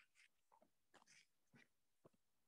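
Near silence, broken by a few faint, scattered short clicks and soft hissing noises.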